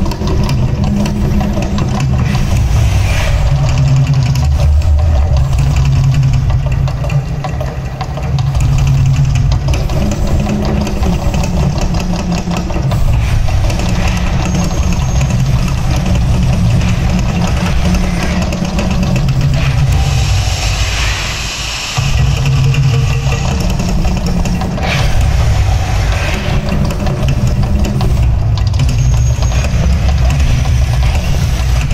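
Mirage Volcano show in full eruption: a loud, continuous deep rumble from its loudspeaker soundtrack and gas flame bursts. It dips briefly about two-thirds of the way through, then cuts back in.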